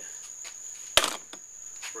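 Steel golf wedge shaft snapping at the groove scored by a pipe cutter: one sharp snap about a second in, with a brief ring after it.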